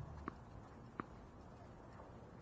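A tennis ball bouncing twice on a hard court, two short sharp knocks about 0.7 seconds apart with the second the louder, typical of the server's routine just before serving.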